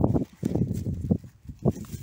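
Rustling and several short knocks as hands work among the leaves and fruit of an uprooted tomato vine, close to the microphone.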